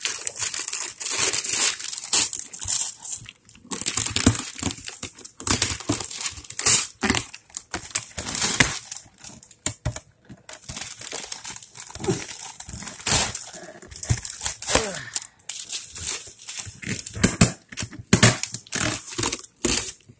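Wrapping paper being crinkled and torn off a gift box in irregular handfuls, with brief pauses.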